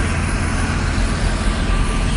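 Steady low rumble of city street traffic, with large vehicles idling close by.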